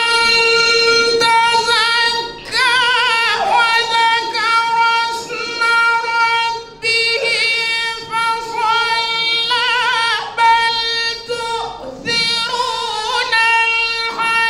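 A man reciting the Quran in a high, melodic chant. He holds long notes and decorates them with rapid wavering runs, with short pauses for breath between phrases.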